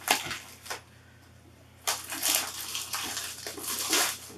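Clear plastic protective film rustling and crinkling as it is pulled off a cutting machine by hand, in two stretches with a short pause about a second in.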